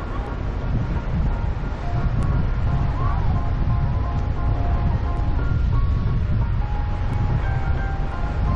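Wind buffeting the microphone in a steady low rumble, with a simple tinkling melody of held notes sounding over it.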